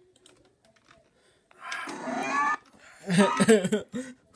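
Faint clicks in the quiet first second and a half, then a voice in two stretches of about a second each, the first with rising pitch, the second speech-like and louder.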